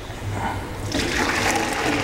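Hot pasta-cooking water poured from a pot with a strainer insert into a stainless steel sink, a steady splashing gush that grows louder about a second in.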